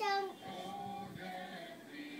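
A baby's brief high-pitched squeal, falling in pitch, right at the start, followed by fainter singing or voices in the background.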